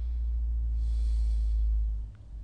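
A person's breath blowing on a close microphone: a steady low rumble with a soft hiss in the middle, stopping abruptly near the end.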